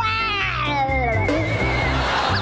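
Game-show background music with a steady beat. Over it, a drawn-out wail falls in pitch over about a second, followed by a high wavering tone in the second half.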